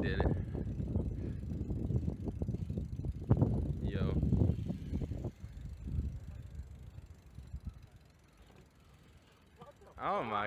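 BMX bike tyres rolling over a concrete skatepark, a rough rumble with small knocks that fades away over the second half.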